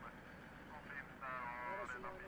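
A voice coming over a military field radio, thin and nasal as through a handset, with a drawn-out held sound in the second half.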